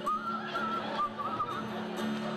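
A whistled melody, one wavering high line with vibrato, over guitar accompaniment; the whistling stops about three quarters of the way through.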